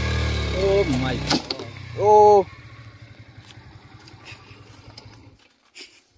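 Motorcycle engine idling with a steady low rumble, which drops away sharply about a second and a half in. A fainter idle rumble goes on until it cuts off near the end, with a short shout about two seconds in.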